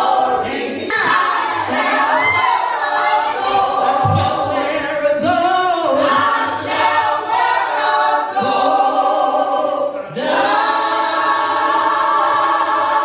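A group of women singing gospel together into handheld microphones. The voices drop briefly near the end, then come back in together.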